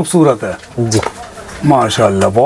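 A man's voice speaking in short, low-pitched phrases.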